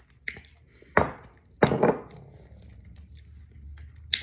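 Tableware knocks: a glass sauce bottle being set down and chopsticks against a plate. There is a light click, then two sharper knocks about a second and a second and a half in, each with a brief ring.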